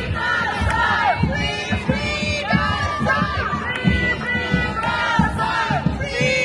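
Crowd of protesters shouting and chanting, many voices overlapping, with irregular low thumps underneath.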